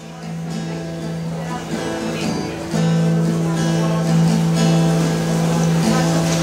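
Acoustic guitar playing the opening chords of a song, ringing notes that grow louder about three seconds in.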